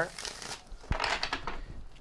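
A Wild Unknown tarot deck being shuffled by hand: soft rustling of the cards, with a light knock about a second in.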